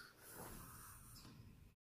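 Near silence: faint room tone fading out, then dead silence for the last moment.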